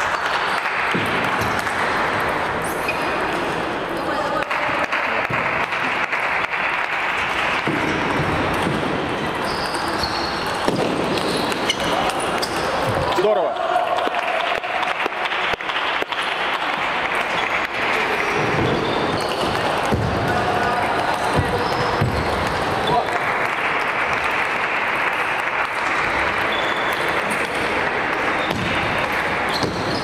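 Table tennis balls clicking off tables and bats, over a steady murmur of voices in a sports hall.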